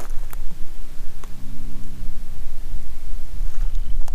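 Wind buffeting the camera's microphone: a loud, fluttering low rumble throughout, with a faint hiss above it.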